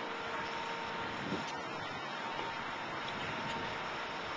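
Steady city street background noise: the even hum of traffic, with no distinct events.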